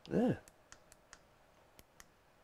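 Small plastic buttons on a neck massager's handheld remote control being pressed: a handful of sharp, light clicks, irregularly spaced. It is a crisp tactile click, a "nice click".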